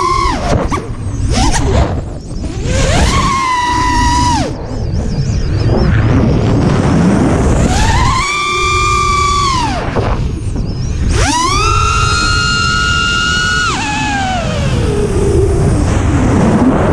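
FPV racing quadcopter's brushless motors heard from the onboard camera, with heavy wind noise. There are three throttle punches, at about three, eight and eleven seconds in. On each the motor whine rises quickly, holds steady, then falls away.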